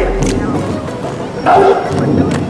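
Two short, loud shouted calls, one at the start and one about a second and a half later, as a uniformed squad marches in drill.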